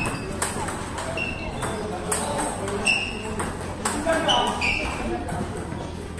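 Table tennis balls clicking off bats and tables in rallies, an irregular run of sharp pings several times a second, with voices murmuring in the hall.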